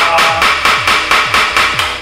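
Wooden gavel banged rapidly on its sound block, about five strikes a second, over background music with a deep, sliding bass beat.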